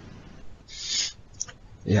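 A man's short breathy exhale during a pause in his speech, with a faint click after it, then the start of a spoken "yeah" near the end.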